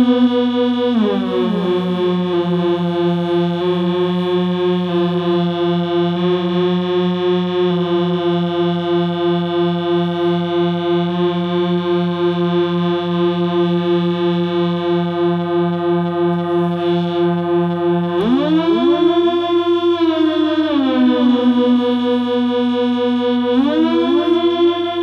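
Waldorf Rocket synthesizer playing a sustained, buzzy drone through a digital delay. Its pitch slides down about a second in and holds steady for a long stretch; near the end it sweeps up and back down twice, with delay echoes of each glide overlapping.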